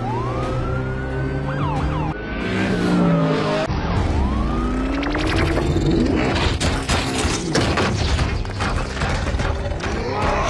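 Film soundtrack of a highway chase: police-style sirens on black Chevrolet Suburbans wail over engines and music, then from about five seconds in a rapid run of sharp impacts and crashes takes over.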